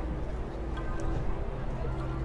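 Spectators in stadium stands chattering, a general murmur of voices over a steady low rumble.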